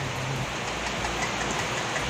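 Steady, even rush of fast-flowing floodwater pouring down a street.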